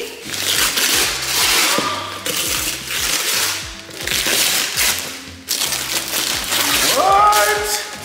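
Wrapping paper being torn off a gift box in several long rips, over background music with a steady beat.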